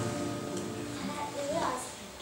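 Background music fading out, its held tones dying away, with a child's voice starting faintly near the end.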